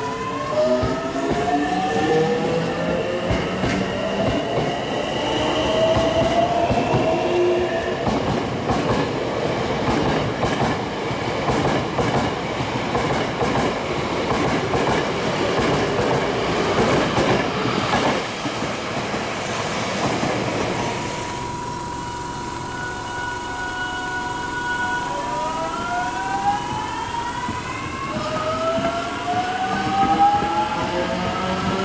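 A Hankyu 8300 series electric train's GTO-VVVF inverter whines in several tones that climb in pitch as the train accelerates away, giving way to the rolling noise of wheels and traction motors as the cars pass at speed. After a sudden change, a Hankyu 8200 series train's GTO-VVVF inverter holds a steady whine, then starts a new set of rising tones as it accelerates.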